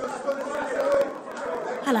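Indistinct chatter of many people talking at once in a large room, with a slight hall echo.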